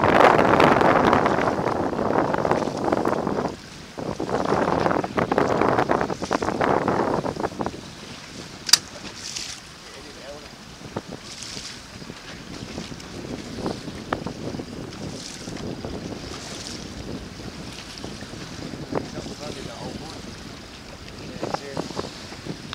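Strong wind buffeting the microphone over choppy water. The rush is loud for the first seven or so seconds, dipping briefly about three and a half seconds in, then falls to a lower steady rush of wind and waves, with a single sharp click about nine seconds in.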